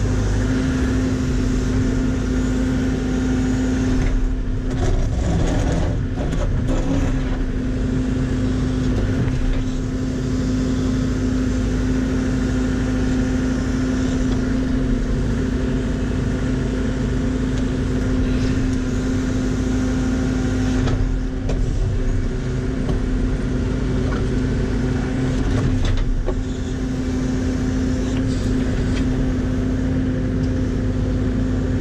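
John Deere 85G excavator's diesel engine running at a steady throttle, heard from inside the cab, while the arm and bucket dig soil; a constant hum holds the same pitch throughout, with small swells in level.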